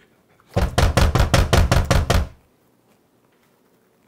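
Rapid, heavy knocking on a door: about a dozen quick knocks in a run lasting a little under two seconds, starting about half a second in. Someone is at the door.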